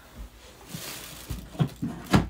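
Rummaging and handling noises: a brief rustle, then several short thuds and knocks of things being moved about while earphones are looked for.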